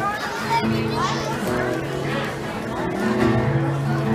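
Acoustic guitar playing the opening chords of a slow song, the notes held and ringing, with children's voices chattering over it.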